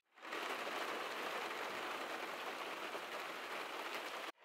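Heavy rain pouring onto a car's roof and windows, heard from inside the car as a steady, even hiss.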